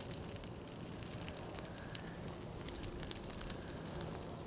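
Dry prairie grass burning in a prescribed burn: a steady low crackle with many small sharp snaps scattered throughout.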